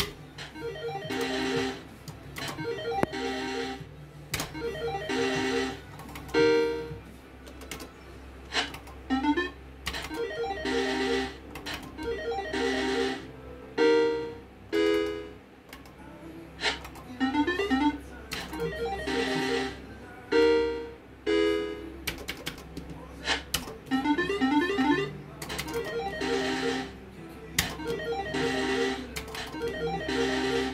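Pirate 2 video slot machine playing its electronic game tunes: short keyboard-like melodic phrases and chimes that start and stop every second or two.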